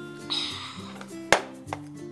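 A mug set down on a table: a sharp knock a little past halfway and a lighter knock soon after, preceded by a short hiss. Background music plays underneath.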